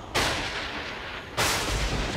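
Two sudden heavy impact hits about a second apart, each dying away slowly: dramatic sound-effect stings laid over a sword thrust.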